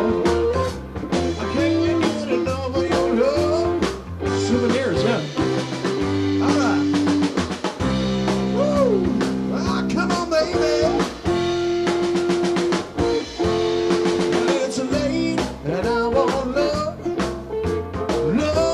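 A live rock band playing a bluesy number: drum kit, electric guitar, and keyboards holding chords with a keyboard bass line underneath.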